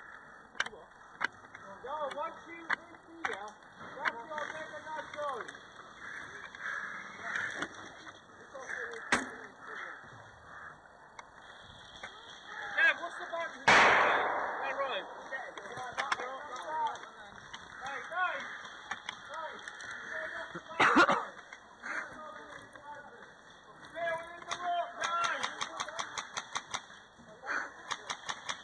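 Airsoft skirmish: scattered sharp pops and clicks of airsoft guns firing, two louder bangs, the first and loudest about halfway through, and a quick even run of shots near the end. Indistinct shouting voices of players run underneath.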